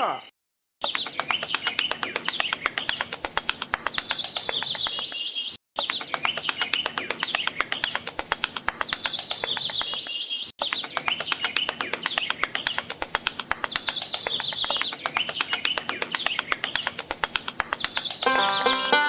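Birds chirping in high, quick whistled phrases over a dense twittering. It is a short clip looped: the same passage repeats about every five seconds, with brief silent breaks between the repeats.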